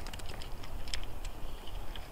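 Scattered light clicks and ticks from an ice fishing rod, reel and line being handled while a fish is lifted up through the hole, over a low rumble of wind on the microphone.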